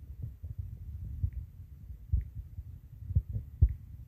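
Irregular low thumps over a low rumble, with a few faint short high ticks; the sharpest thumps come near the end.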